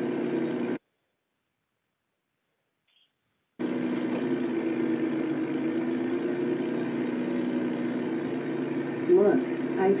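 Driving simulator's engine sound, a steady hum on a few fixed pitches, played back over a video call. It cuts out completely for about three seconds near the start, then comes back unchanged.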